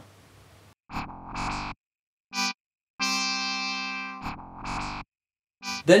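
Software synthesizer notes (Yoshimi) played from the Open Horn MIDI wind controller: a few short notes, one held for just over a second, then two more short notes. Each note starts and stops cleanly, with silence in between.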